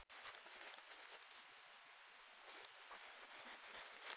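Faint scratching of a stylus writing on a drawing tablet, in many short strokes.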